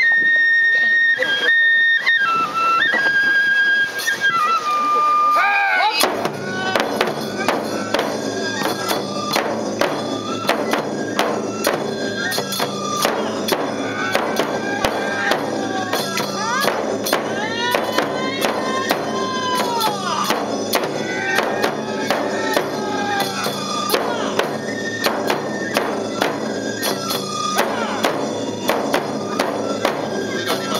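Neputa festival hayashi music: a bamboo flute plays a few held notes alone, then about six seconds in large barrel drums and hand cymbals come in with several flutes, beating out a steady, driving rhythm under a wavering flute melody.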